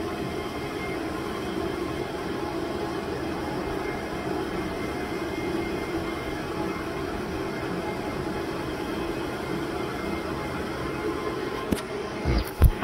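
Steady drone of equipment cooling fans and air conditioning running in a cell site equipment shelter, holding an even level throughout, with a short knock near the end.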